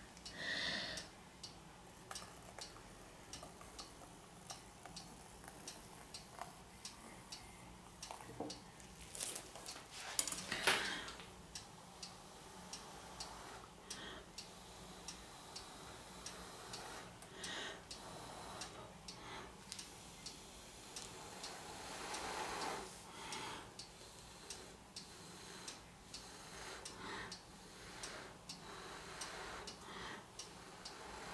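Faint, irregular ticking clicks, about one or two a second, with a few short, louder soft noises in between.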